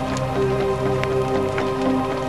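Background music with long held notes over a light crackling of paper burning in a candle flame.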